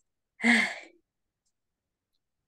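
A person's single breathy sigh, lasting about half a second and trailing off just after the start.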